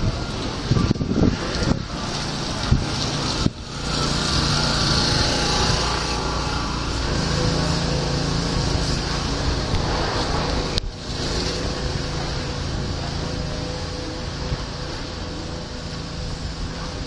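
Shopping-street ambience: steady outdoor noise with a low engine-like hum underneath, and a few sharp knocks in the first three seconds.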